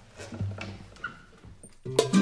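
Soft scattered taps and handling on a darbuka (Egyptian goblet drum) as the player gets ready. Near the end the music comes in suddenly and loudly.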